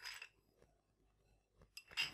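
Near silence with faint handling sounds: a brief soft hiss of sugar sprinkled from a metal spoon onto chicken at the start, then a few light clinks of the spoon against a small ceramic bowl near the end.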